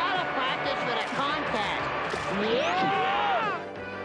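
Cartoon soundtrack: background music mixed with wordless cries and exclamations from the characters, with several voices sliding up and down in pitch. It breaks off shortly before the end.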